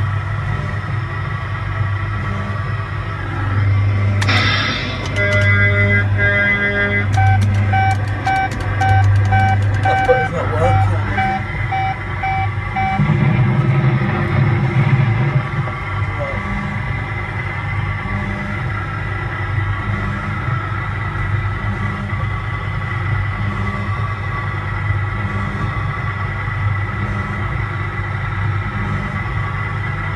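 A coin-operated kiddie ride's game soundtrack playing through its speaker: electronic music with a low note that pulses about once a second, and a run of short, evenly spaced beeps between about five and twelve seconds in.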